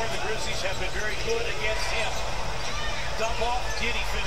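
A basketball being dribbled on a hardwood court, heard through the game broadcast over steady arena crowd noise, with a voice talking over it.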